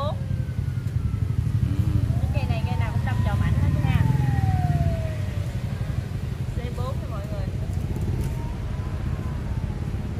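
A motor vehicle engine going by over a steady low rumble, its pitch rising and then falling twice, with faint voices.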